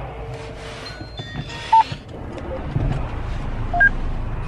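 A few short electronic beeps at different pitches, the loudest about two seconds in and another pair just before the end, with rustling between them over a low steady rumble.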